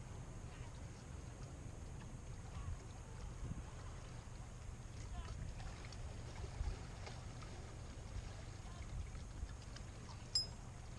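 Outdoor seaside ambience: a steady low rumble of wind on the microphone over sea water washing against rocks, with faint voices and a few light clicks.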